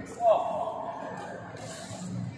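Indistinct voices echoing in a large hall, with one short, loud, falling-pitched sound about a quarter second in.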